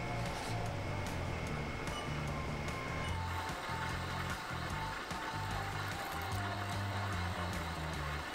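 Background music with a stepping bass line and a held high tone for the first few seconds.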